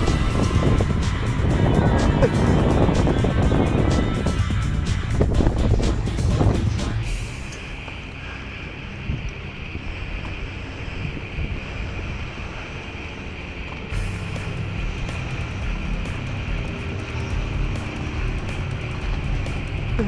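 Wind buffeting the microphone on an open boat on the water, a loud rumbling crackle for about the first seven seconds. It then drops to a quieter, steady background with music.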